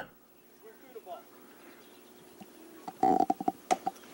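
Low, quiet background for about three seconds, then a short, loud burst of a person's voice about three seconds in, followed by a few sharp clicks near the end.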